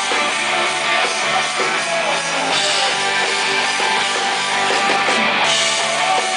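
Live rock band playing: electric guitars and a drum kit, steady and loud, with little deep bass.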